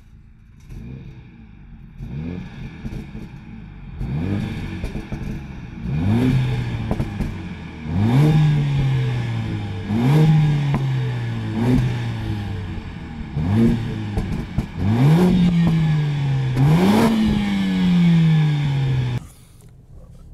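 Mercedes-AMG CLA 45 S turbocharged four-cylinder heard at the tailpipes, revved repeatedly at a standstill, its sound amplified by the car's sound module. Each of about eight blips rises sharply in pitch and falls away more slowly; they get louder from about six seconds in, and the last two are held longer before the sound cuts off near the end.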